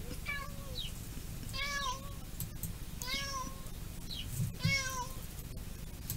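Domestic cat meowing four times, each meow about half a second long and spaced roughly a second and a half apart, with short higher squeaks in between.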